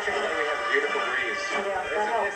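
High school marching band playing as it parades, heard through an old television broadcast recording, with voices mixed in.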